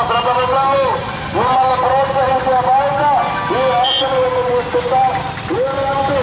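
A voice calling out in long, drawn-out phrases, repeated several times, each one rising, holding and falling in pitch, over the steady rumble of crowded street traffic.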